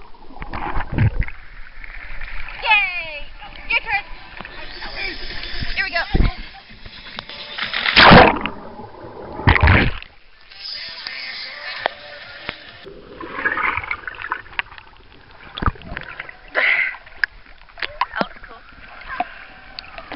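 Swimming-pool water splashing and sloshing around a waterproof camera as it goes under and breaks the surface, with several loud splashes, the loudest about eight seconds in.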